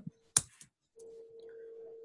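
A single sharp computer click, then from about a second in a steady mid-pitched tone that holds for about a second and a half.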